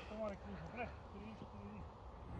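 Faint, distant speech in short snatches over a low rumble.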